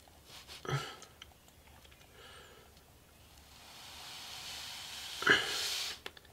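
Graphite pencil drawing on paper: faint light scratches at first, then a longer stroke that grows louder over the last couple of seconds and stops suddenly.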